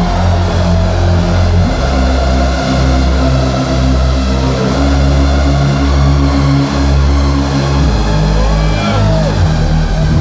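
Loud hardstyle electronic music over an arena sound system: a heavy, sustained bass line that steps between long held notes. High gliding tones sweep up and down near the end.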